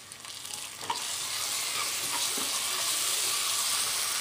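Sliced onions, cashews and ginger-garlic paste sizzling in hot oil in a pressure cooker as a metal spatula stirs them. The sizzle is faint at first, then grows louder and steady about a second in, when the stirring starts.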